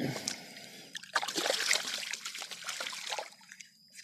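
Shallow water splashing and sloshing as a fish is released by hand at the water's edge and swims off, with irregular small splashes that die away near the end.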